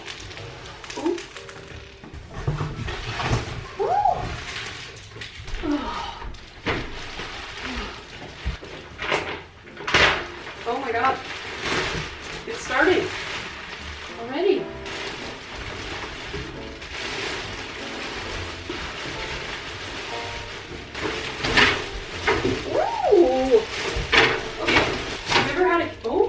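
Plastic wrapping and cardboard rustling and crinkling as a rolled memory-foam mattress is pulled from its box and unrolled over a bed frame, busiest near the end. A woman's short wordless exclamations come a few times, over background music.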